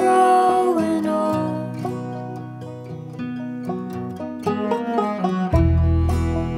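Indie-folk band playing an instrumental passage: banjo picking over held string notes, with a sung note fading out in the first second. A low bowed cello line comes in near the end.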